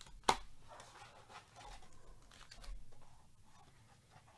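A cardboard trading-card box and its wrapped card packs being handled: one sharp snap about a third of a second in, then soft rustling and sliding as the packs are pulled out of the box.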